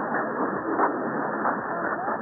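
Weak long-distance mediumwave AM broadcast on 1110 kHz, received through a software-defined radio in synchronous AM mode. Faint speech is buried in steady hiss and static, and the audio stops sharply above about 2 kHz.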